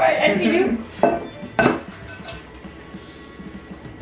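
Two sharp knocks about half a second apart: a raw egg, held between taped elbows, being tapped against the rim of a glass mixing bowl to crack it.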